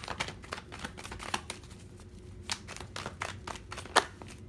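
A deck of tarot cards being shuffled hand to hand: a run of quick, irregular card clicks and slides, with one sharper snap of the cards just before the end.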